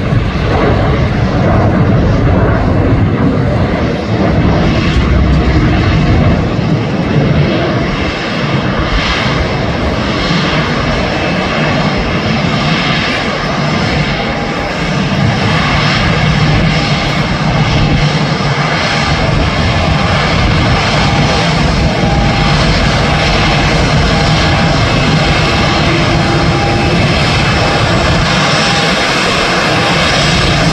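ANA Boeing 787 jetliner's Rolls-Royce Trent 1000 turbofan engines running at taxi power close by: a loud, steady jet rumble with a faint high whine.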